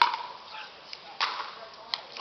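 Pickleball paddles hitting a plastic ball during a rally: three sharp pops, the first and loudest right at the start with a brief ring, another a little over a second later, and a smaller one near the end.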